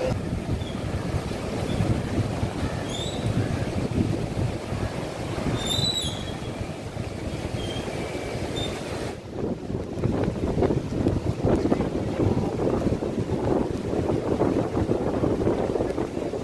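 Rough sea surging and breaking on the shore, mixed with gusting wind buffeting the microphone. The sound changes about nine seconds in, the high hiss dropping away and the low surging growing stronger.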